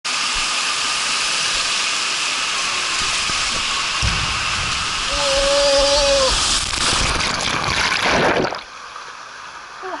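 Water rushing down a stainless steel water slide, heard close up from the rider's seat. From about four seconds in, a low rumble of the rider sliding down the chute joins the steady rush, with a short steady tone about halfway through. The sound drops off sharply near the end as the rider passes into an enclosed tube.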